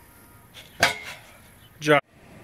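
A single metallic clank with brief ringing, as a steel car-deadlift frame is set down on the pavement, followed near the end by a short burst of a person's voice.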